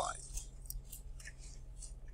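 Quiet room tone with a steady low hum and a few faint, scattered ticks and rustles.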